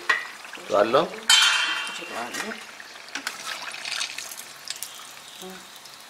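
Halva-filled siamisi pastries deep-frying in a pan of hot oil, the oil sizzling steadily, with a brief loud hiss about a second and a half in as a pastry is moved with a slotted metal spoon and a few light ticks of the spoon.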